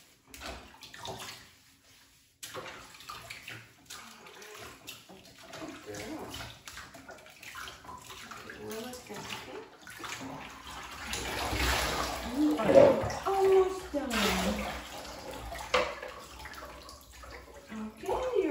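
Water from a hand-held shower hose running and splashing in a bathtub as a beagle puppy is rinsed, louder from about two-thirds of the way in. A brief voice-like sound comes in the loudest stretch.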